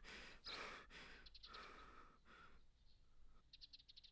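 A faint human sigh about half a second in, otherwise near silence.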